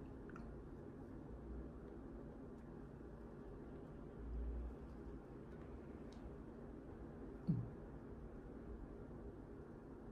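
Quiet room tone with the faint sounds of a man smoking a cigar: soft puffs and lip noises on the cigar, with one short, louder sound about seven and a half seconds in.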